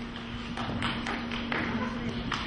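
A few scattered, irregular hand claps from an audience in a hall, over a faint steady low hum.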